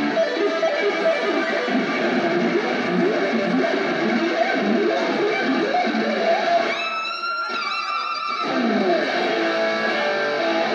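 Electric guitar on a Fender Stratocaster, played live through an amplifier: quick runs of notes, then one held note about seven seconds in that wavers with vibrato before the fast runs return.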